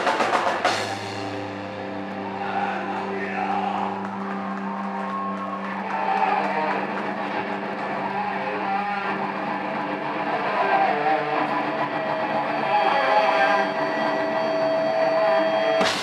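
Live rock band. A short burst of drums at the start gives way to a long stretch of held, ringing guitar and bass notes with little drumming: a deep note held for the first few seconds, and a long high sustained note near the end. The full drum kit crashes back in at the very end.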